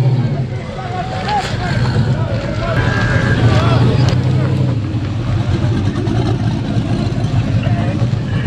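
Turbocharged Chevrolet Malibu's engine running hard at high revs during a burnout. A crowd is shouting over it in the first second.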